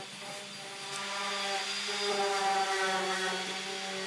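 Electric random orbital sander running steadily with a humming motor while sanding the edges of pine timber to round them off.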